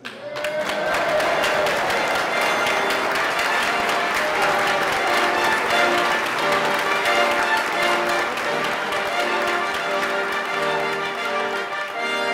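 A crowd applauding while a brass ensemble with trombones plays held chords. The clapping breaks out suddenly and thins out near the end, leaving the brass.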